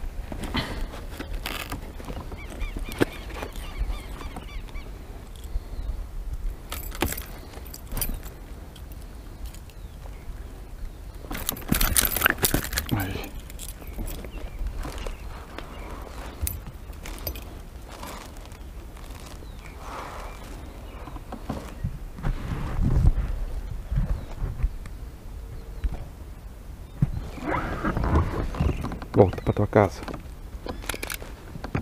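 Handling of fishing gear while unhooking a bass: scattered sharp metallic clicks and rattles from the lip-grip and lure, with a loud cluster about twelve seconds in, over a steady low rumble.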